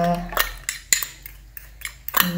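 A metal spoon tapping and scraping against a small glass bowl, several short clinks, as beaten egg is scraped out of it into a pot of milk.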